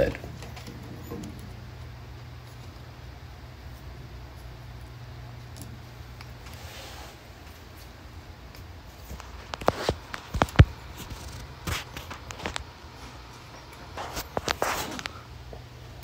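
Gloved hands working a silicone coolant hose onto the glass water nipple of a CO2 laser tube: quiet rubbing with several sharp clicks and squeaks in the second half, over a steady low hum.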